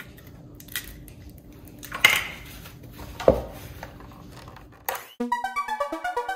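A few short knocks and clatters of kitchen utensils against a stainless steel mixing bowl over a low background, the sharpest about three seconds in. Electronic keyboard music starts about five seconds in.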